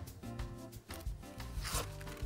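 Baking paper rustling and rubbing as it is creased and pressed into a loaf tin, with a stronger rustle near the end, over soft background music.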